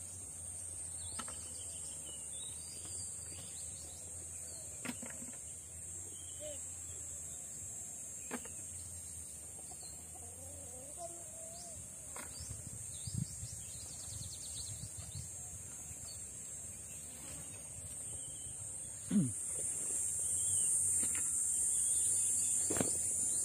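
Quiet rural outdoor ambience: a steady high-pitched insect drone that grows louder near the end, with a few scattered knocks, faint distant calls in the middle and a sharper thump near the end.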